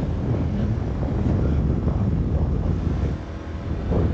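Wind buffeting the microphone on a moving motor scooter, a steady low rumble mixed with road and engine noise. It eases slightly about three seconds in.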